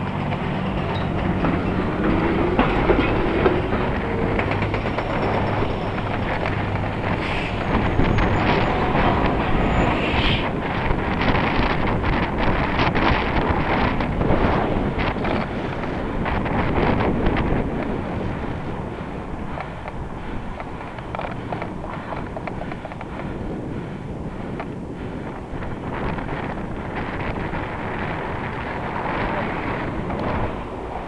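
City street traffic heard from a moving bicycle. A heavy vehicle's low engine hum is heard for the first several seconds, then it gives way to continuous road and wind noise.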